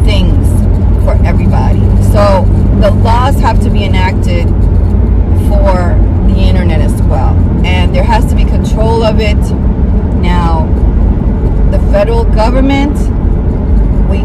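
Steady low drone of road and engine noise inside the cab of a moving vehicle, under a woman's talking.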